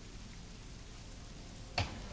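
Faint, steady hiss-like background noise with no distinct events, in a pause between speakers.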